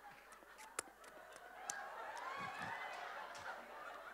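Faint audience reaction to a stand-up comedian: scattered laughter and drawn-out voices gliding up and down in pitch, with a sharp click about a second in.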